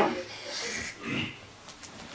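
A man's quiet, wordless nasal murmuring and breathing while he reads to himself, in two short bits: one at the start and one about a second in.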